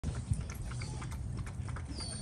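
A Rottweiler eating or lapping from a metal bowl: a quick, irregular run of small clicks and smacks of mouth and muzzle against the bowl.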